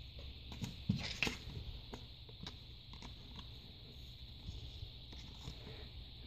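Faint rustles and small clicks of a trading card being handled and slid into a plastic card sleeve, a little louder about a second in.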